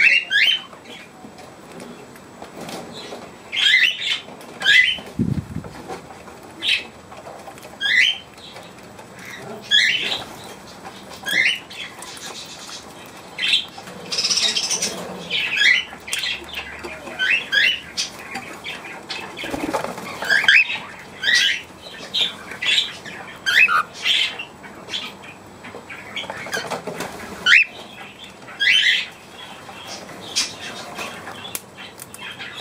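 Aviary birds, budgerigars and cockatiels, calling: loud, short falling chirps repeated every second or two.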